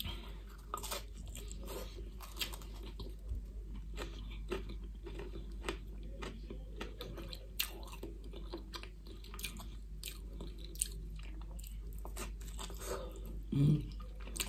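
A person chewing a slice of pizza with a crisp crust, with faint crunches and wet mouth clicks scattered irregularly throughout.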